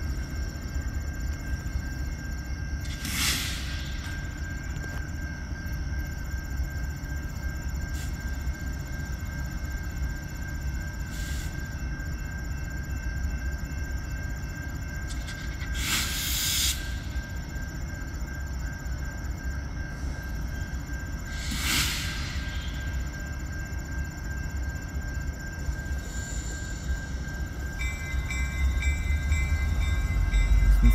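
Diesel locomotives of a freight train led by a CN EMD SD60 rumble steadily at low throttle as the train creeps closer. Four short bursts of hiss cut in along the way, with a steady high insect tone behind. Near the end new tones come in and the rumble grows louder as the locomotives near.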